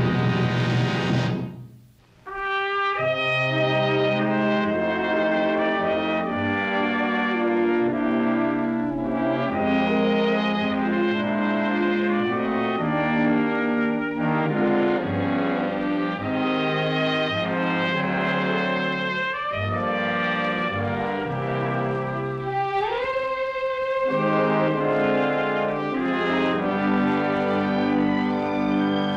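Orchestral closing-credits theme music led by brass. It breaks off briefly about two seconds in, then resumes with held notes.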